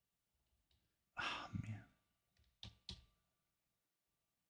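A man's breathy sigh into a close microphone about a second in, followed a moment later by two short clicks.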